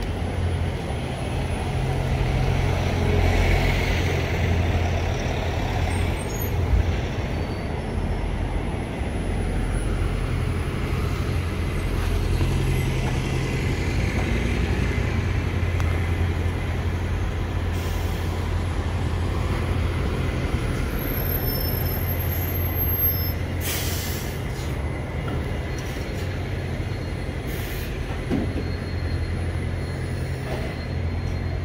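Street traffic led by London double-decker buses: steady low engine noise as New Routemaster buses pass and pull in to the stop. A short hiss of air brakes comes late on.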